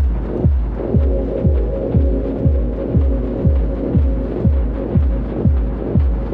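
Dub techno track: a deep kick drum about twice a second, each hit dropping in pitch, under a murky, hissy hum. A held tone comes in about a second in and sustains over the beat.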